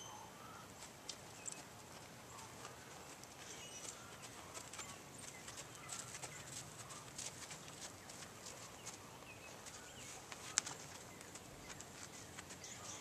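Faint hoofbeats of a ridden horse walking on sand footing, with one sharper click near the end.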